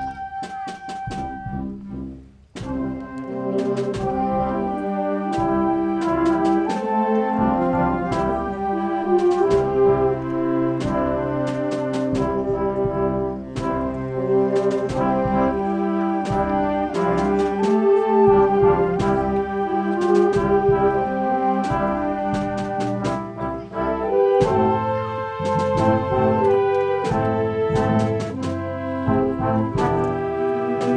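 Concert wind band playing: a single held note fades out, then, after a short break, the full band comes in with brass chords and sharp percussion strikes.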